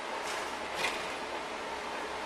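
Steady background hum, with two faint short scrapes as a rusty steel stove-door part is handled on a workbench, about a quarter second and just under a second in.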